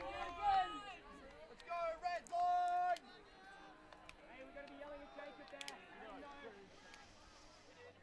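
Players' voices on the field: loud shouts and calls in the first three seconds, one of them a held call, as they celebrate an equalising score. Faint scattered chatter follows.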